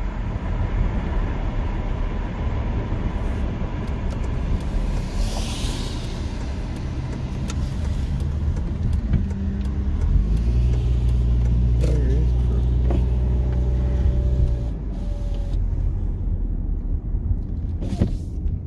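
A car being driven, heard from inside the cabin: engine and road noise continue throughout. The engine hum grows steadier and a little louder for about four seconds past the middle.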